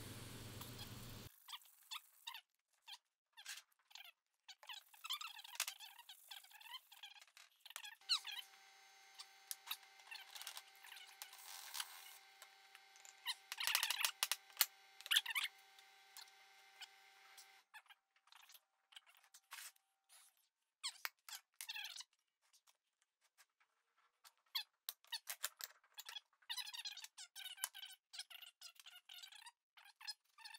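Faint scattered clicks, taps and squeaks of metal milling-vise parts being handled and fitted together, busiest about halfway through, with a faint steady hum for several seconds in the middle.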